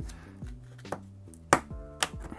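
Plastic snap clips of a Kindle Keyboard's back cover releasing as a plastic pry tool runs along the seam: a few small clicks and one sharp click about one and a half seconds in. Soft background music plays underneath.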